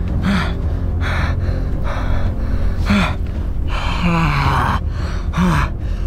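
A person's pained gasps and short falling cries, repeated several times with one longer cry near the middle, as gauze is packed into a bleeding leg wound.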